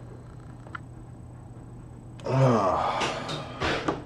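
A man's loud voiced sigh about two seconds in, its pitch falling, with breathy noise trailing after it, over a steady low hum.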